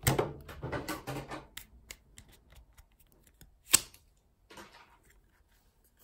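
Trading-card deck and its plastic packaging handled by hand: rustling and crinkling at first, then scattered small clicks and one sharp click a little under four seconds in.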